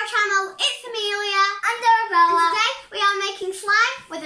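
A young girl singing, holding a few notes.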